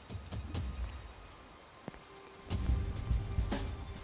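Rain falling on wet pavement, a steady hiss with scattered drips. About halfway in, soundtrack music comes in under it with a low held tone and deep rumbling beats.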